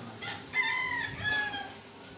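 A rooster crowing once: a drawn-out call starting about half a second in and dropping slightly in pitch at its end.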